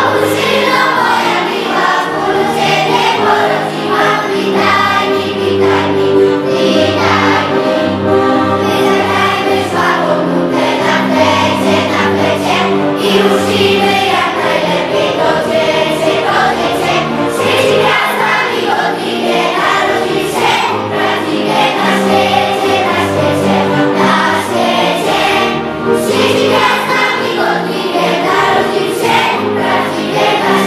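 Children's school choir singing a Polish Christmas carol (kolęda) in several voices, continuously, with sustained low accompaniment notes underneath.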